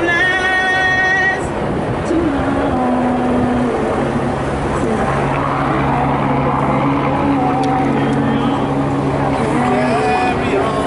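Voices singing slow, long-held notes over the noise of a large crowd, with a high held note in the first second and a half and lower sustained tones after it.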